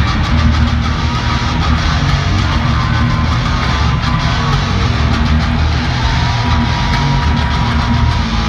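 Electric guitar and bass guitar playing a loud instrumental punk rock piece live, heard through the echo of an arena from the stands.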